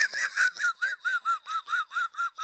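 A high-pitched, squeaky laugh: a quick, even run of short wheezing pulses, about six or seven a second, slowly fading.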